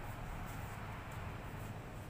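Quiet, steady background ambience with a low rumble and no distinct sound standing out.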